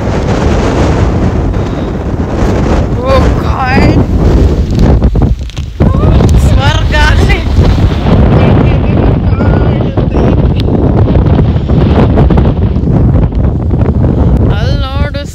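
Strong gusty wind blasting across the microphone, loud and continuous, with a brief lull about five seconds in.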